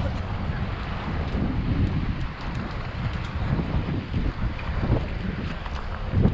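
Wind buffeting the camera microphone: a gusty low rumble that rises and falls.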